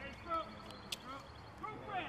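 Faint voices calling out at a distance, with a single sharp click a little before halfway through.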